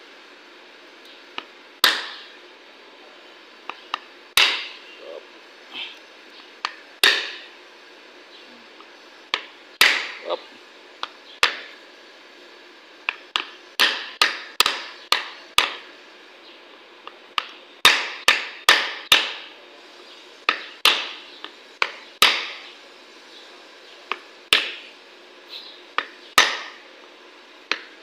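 Hammer blows on the wooden back of a wire brush held as a buffer against a wheel hub, driving the new ABS sensor cap onto the hub bearing. Sharp knocks with a short ring, spaced a couple of seconds apart at first, then in quick runs of several taps in the middle.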